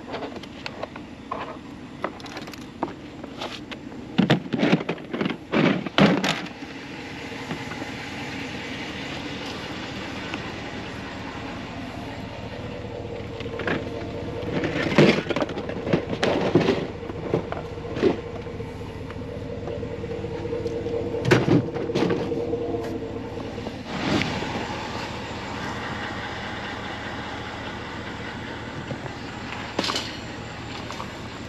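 Hard plastic toy parts knocking and clattering together as they are handled, with a run of sharp knocks about four to six seconds in. Later comes a long continuous rattle with a steady hum and scattered knocks, typical of a wire shopping cart being rolled over pavement.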